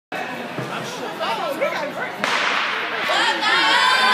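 A single starter's gun shot about two seconds in, sharp and echoing in a large indoor arena, over spectators' chatter; the crowd noise swells after the shot as the relay race begins.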